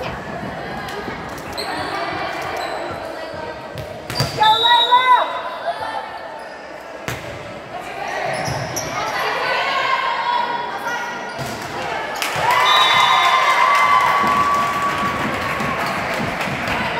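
Volleyball rally in an echoing gym: the ball is struck with several sharp smacks while players and spectators call out, and the shouting and cheering grow louder about twelve seconds in as the point ends.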